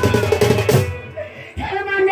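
Live folk music: a dhol barrel drum beaten in quick strokes under singing. The music drops away about a second in, then the drum comes back with a hit and the singing resumes.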